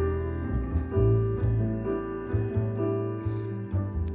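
Upright double bass played pizzicato, a line of plucked low notes, with piano accompaniment above it.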